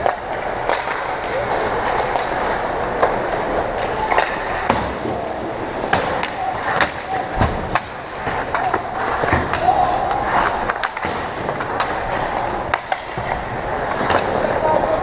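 Ice hockey play: skate blades scraping and carving on the ice, with scattered sharp clacks of sticks and puck, and distant shouting voices.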